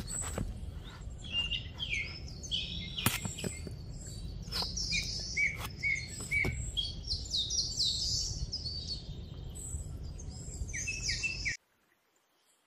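Small birds chirping and trilling over and over, with a steady low rumble beneath and a few sharp knocks. The sound cuts out suddenly near the end.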